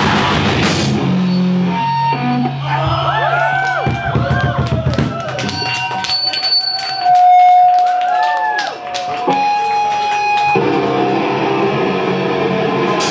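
Live heavy rock band with electric guitars and drum kit. The full band drops out about a second in to a sparse passage of guitar notes that bend and slide in pitch, with held tones and scattered drum and cymbal hits, then the whole band comes crashing back in near the end.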